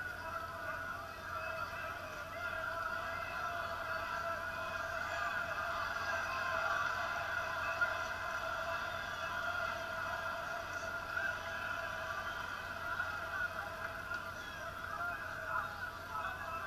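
Arena crowd noise from an MMA fight, a steady wash of shouting and cheering heard thinly through a screen's small speaker, with a low hum underneath.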